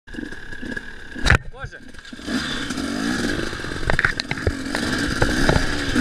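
Dirt-bike engine revving up and down as it rides a forest trail, coming in louder about two seconds in after a single sharp knock.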